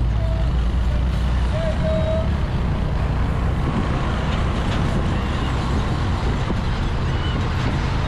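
Riding noise from a Suzuki GS150 SE motorcycle's single-cylinder four-stroke engine, heard from the rider's helmet at road speed, mixed with wind on the microphone. A couple of short, high tones come in the first two seconds.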